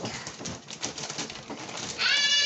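Two dogs play-wrestling on a vinyl floor: irregular scuffling and claw clicks, with short low vocal sounds from the dogs.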